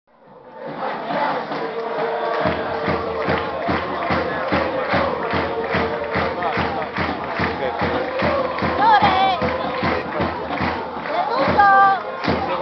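Football supporters' crowd chanting in the stands over a fast, steady beat of about four strokes a second, fading in during the first second.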